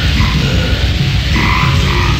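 Loud, aggressive heavy metal music with dense low-end guitars and drums, carrying a deep guttural growled vocal.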